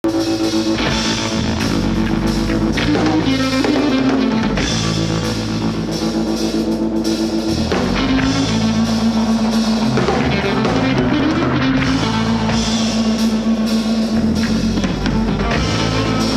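Live rock band playing an instrumental passage: drum kit, electric bass and electric guitar, with long held notes over a steady beat and no vocals.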